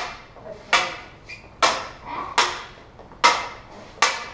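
Lightsaber blades clacking together in a steady exchange of strikes: five sharp hits, a little under a second apart, each with a short ringing decay.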